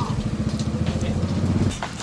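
Motorcycle engine idling, a low rapid pulsing that stops abruptly near the end.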